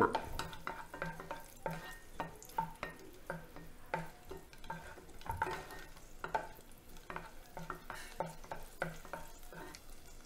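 Wooden spatula scraping and knocking around a nonstick frying pan in a steady run of short strokes, about two a second. Cashews and raisins are being stirred in hot fat, with a light sizzle underneath.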